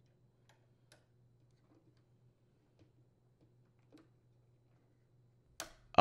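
A few faint, scattered clicks and taps of a plastic washer diverter motor being handled and hooked onto its actuator arm, over a faint steady hum.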